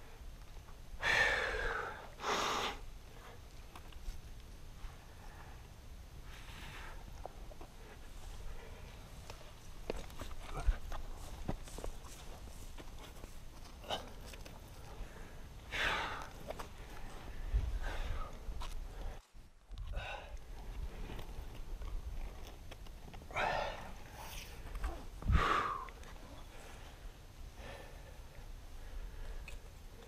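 A rock climber's heavy breathing: several short, forceful exhalations, two near the start, one midway and two near the end, with small scuffs and knocks of hands and gear on the rock between them.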